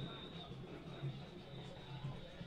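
Faint background noise on the broadcast feed: a low steady hum and hiss with a thin, steady high-pitched tone, with one small knock about a second in.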